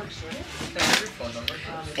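A woman talking, with a short burst of noise about a second in.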